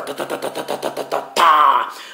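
A man imitating a helicopter with his mouth: a rapid, even chopping of short pulses, about eight to ten a second, like rotor blades, ending about a second and a half in with a louder voiced sound.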